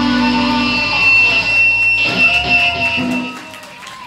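Live rock band with electric guitars and drums playing the final loud bars of a song. The sound drops away about three seconds in as the song ends, leaving the last notes ringing out.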